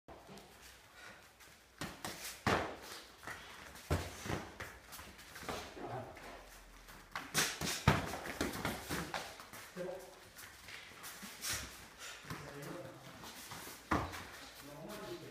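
Light kickboxing sparring: boxing gloves and shin-guarded kicks landing as irregular slaps and thuds, the loudest about eight seconds in.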